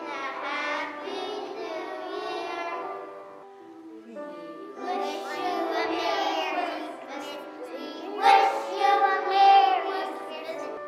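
A group of young children singing a song together, with a short break a little before the middle and the loudest singing near the end.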